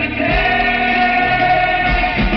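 Rock band playing live: singing with one long held note over electric guitars and drums, loud.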